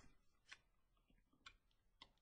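Near silence with two faint clicks about a second apart.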